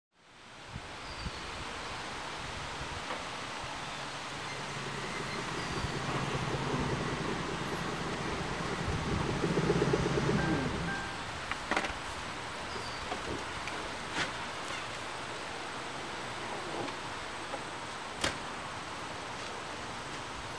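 Outdoor ambience of steady wind and rustling leaves with a few faint bird chirps. A car's engine grows louder through the middle and cuts off about eleven seconds in, followed by a few sharp clicks.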